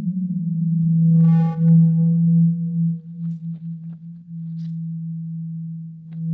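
Background music: a steady low synthesised drone with a fainter higher tone above it, and a short ringing chord about a second in. It gets quieter in the second half.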